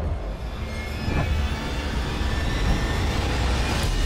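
Whitewater rushing through the rapids of a canoe slalom course: a loud, steady rushing noise with a deep rumble underneath.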